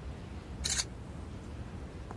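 Smartphone camera shutter sound as one photo is taken: a single short burst about two-thirds of a second in, over a low steady room hum.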